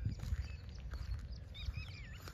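Quiet outdoor ambience: a low rumble of wind on the microphone, with a few faint, short bird chirps in the second half.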